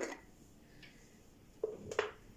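Quiet room tone, then near the end a brief knock and a single sharp click: a metal spoon touching a china plate.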